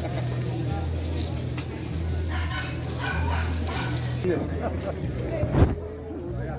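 Indistinct chatter of several people, over a low hum that comes and goes. One sharp, loud sound stands out near the end.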